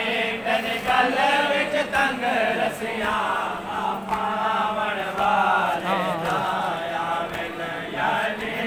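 A group of men chanting a Punjabi devotional song (noha) together, several voices overlapping, over a steady low hum.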